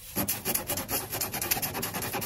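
Spiral rasp reamer from a tyre plug kit worked rapidly in and out of a puncture in a car tyre's rubber tread, rasping in quick repeated strokes. This reams out the puncture hole before a plug goes in.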